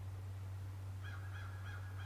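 A bird calling in the distance: three quick notes about a second in, over a steady low hum.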